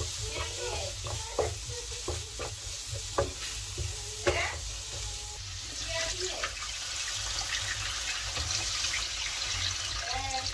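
Wooden spoon scraping and knocking against a nonstick pan as a tomato-onion curry masala sizzles. About halfway through, water is poured into the hot pan and the sound turns to a steady pouring hiss under continued stirring.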